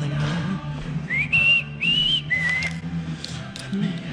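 A person whistling a short phrase of three notes about a second in, the first sliding up, the last dropping lower, over faint background music.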